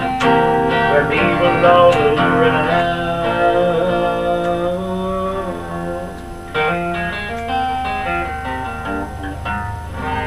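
Acoustic guitar strummed in an instrumental passage, chords ringing on between strokes, with firmer strums about two seconds in and again about six and a half seconds in.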